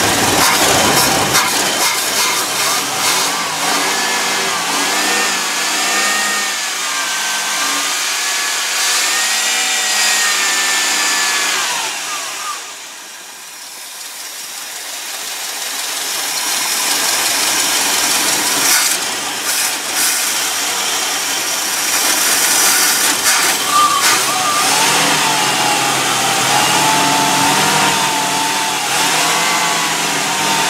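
A 1971 Ford Thunderbird's V8 engine, which has a misfiring cylinder, running with the revs rising and falling. About twelve seconds in the sound drops away, then builds back up over a few seconds.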